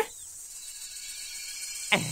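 A short quiet pause holding only a faint, steady high-pitched hiss. A voice starts again near the end.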